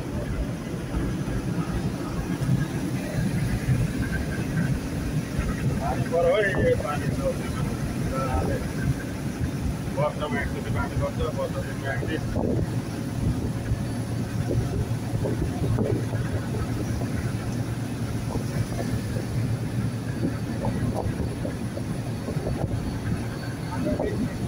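Steady low engine and road rumble inside a moving truck's cab.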